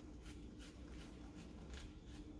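Faint rustling and small scratching clicks of a small plastic plant pot and potting soil being handled as a cutting is worked loose, over a faint steady low hum.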